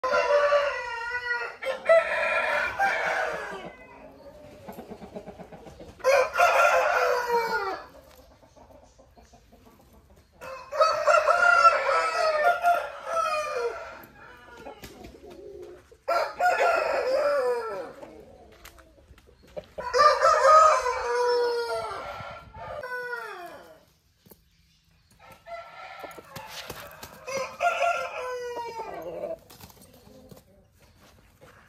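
Aseel roosters crowing, about six long crows in turn, each two to three seconds long and dropping in pitch at the end.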